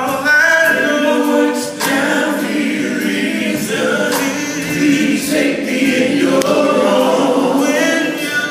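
Male gospel vocal group singing in harmony through microphones, several voices holding long, bending notes together.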